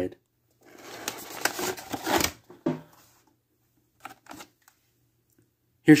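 Cardboard action-figure box being opened and its clear plastic tray slid out: about a second and a half of scraping, rustling handling, a single click, then a couple of faint taps.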